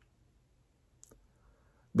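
Near silence (room tone) with one faint, short click about halfway through; a man's voice starts again right at the end.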